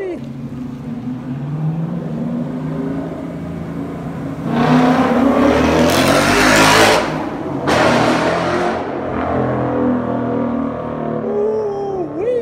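Ford Mustang's 5.0-litre Coyote V8 accelerating hard past with a loud exhaust, from about four and a half seconds in. There is a brief dip near seven seconds, then it pulls again for about a second and dies away.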